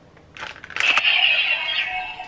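Kamen Rider Zi-O Ziku-Driver transformation belt toy, loaded with the Fang Joker RideWatch, clicks as it is rotated and then plays its electronic transformation sound effect through its small built-in speaker. A whoosh builds about a third of a second in and rises into a loud, bright, sustained effect that begins to fade near the end.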